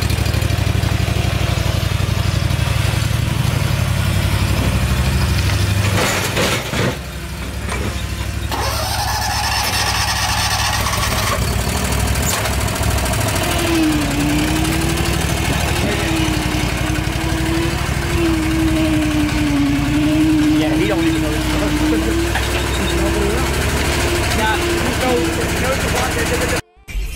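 The beat of a hip-hop track runs for about six seconds and breaks off; then a stand-on lawn mower's gas engine starts and runs, its pitch wavering up and down through much of the second half.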